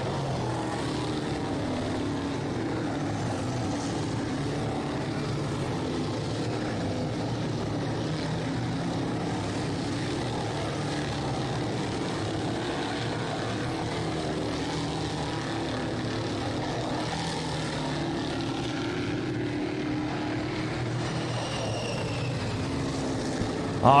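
Sportsman modified race cars' engines running around the oval, a steady drone with engine notes rising and falling as cars accelerate and pass.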